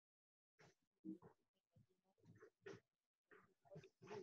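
Near silence, with faint, indistinct voice sounds in short broken pieces starting about half a second in.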